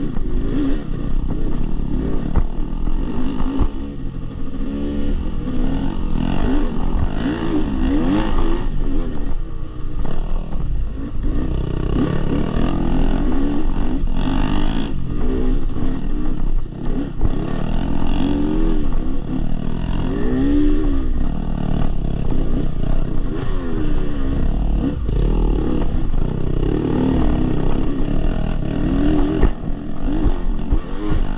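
Yamaha YZ250X two-stroke single-cylinder dirt-bike engine under load on trail, its pitch rising and falling over and over as the throttle is worked on and off.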